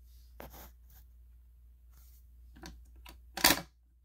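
Simplex break-glass pull station being pulled: a few faint plastic clicks, then one sharp clack about three and a half seconds in as the PULL DOWN handle snaps down, over a low hum.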